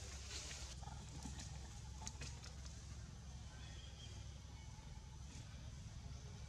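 Faint outdoor ambience: a steady low hum under a light hiss, with a few scattered soft clicks and rustles. There is no clear animal call.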